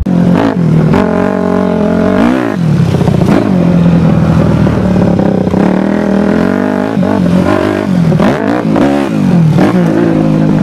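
Dirt bike engine running under load, its pitch rising and falling with the throttle, with quick drops and climbs about two and a half seconds in and again near nine seconds.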